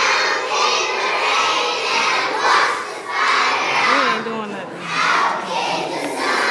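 A large group of kindergarten children's voices together in unison, loud, coming in rhythmic phrases about a second apart.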